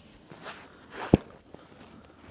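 Close handling noise: one sharp click a little after a second in, with a few faint taps and rustles around it.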